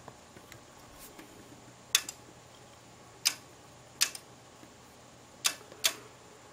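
Elecraft K3 transceiver's relays clicking as it switches bands: five sharp single clicks spaced a second or so apart, one of them a quick double.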